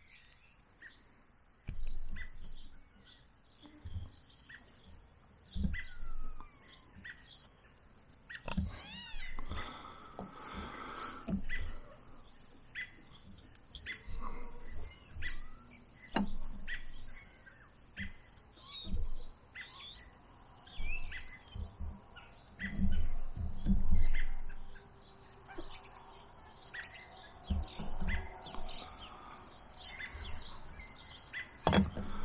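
Carving gouge and knife cutting into a green stick in short, irregular strokes, with knocks from the tool and stick being handled. Birds chirp on and off, including one gliding call a few seconds in.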